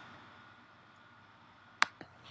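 Faint room hiss, then a single sharp click near the end.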